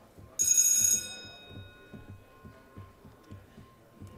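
A single bell chime sounds about half a second in, loud at first, then rings out over the next two seconds. Faint low knocks and room murmur run underneath.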